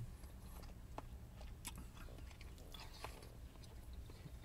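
Faint chewing of a mouthful of food, with a few light clicks, over a low steady hum.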